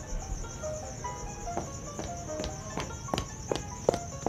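Background music, a steady high tone over short, soft notes, with footsteps on a hard floor starting about halfway through.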